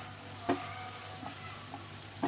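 A thick paste of onion, garlic, ginger, poppy seed, cashew and almond sizzling as it fries in a non-stick pan while a silicone spatula stirs it, with one sharp knock of the spatula against the pan about half a second in.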